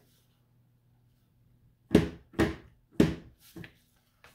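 Three sharp thumps about half a second apart, then a lighter knock, from a clear acrylic stamp block being tapped down onto an ink pad on the table.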